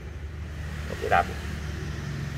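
A steady low mechanical hum, with a brief vocal sound about a second in.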